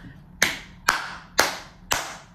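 A person clapping her hands four times, evenly, about two claps a second, each clap ringing briefly in the room.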